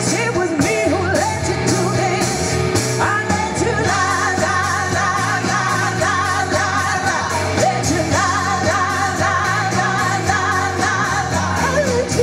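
Live blues-rock band: a woman singing lead with long held, wavering notes over electric guitar and keyboard.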